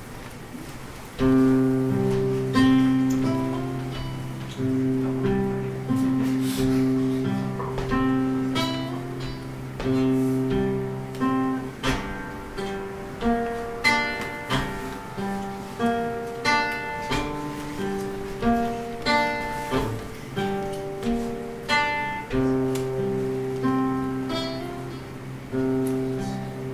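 Acoustic guitar played solo, starting suddenly about a second in: a repeating run of picked notes over a low bass note that rings on, drops out midway and comes back near the end.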